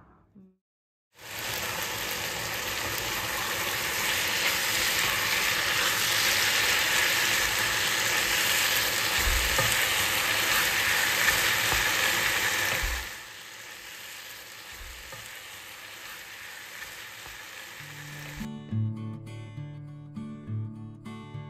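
A mala xiang guo stir-fry of meat and vegetables sizzling in a frying pan as it is turned with a wooden spatula; the loud sizzle starts about a second in and drops to a quieter hiss about two-thirds of the way through. Acoustic guitar music starts near the end.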